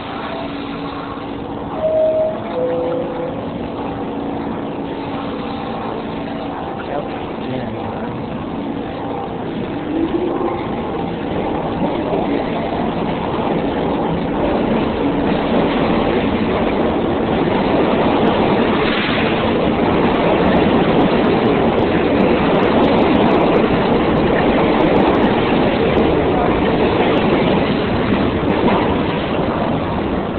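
New York City subway train running, a loud steady rumble and rattle that grows louder through the middle as the train picks up speed. A few brief tones sound in the first few seconds.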